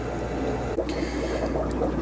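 Steady trickling and bubbling of aquarium filtration water over a constant low hum of fish-room equipment.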